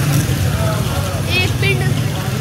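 Busy night-street background: a steady low engine-like hum under scattered voices.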